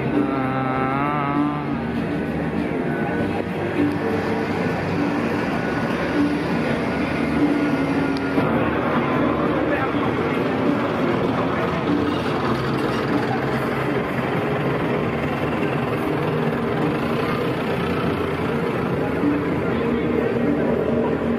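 Busy night-street ambience: many people talking at once, cars and motorbikes passing, and music playing from a bar.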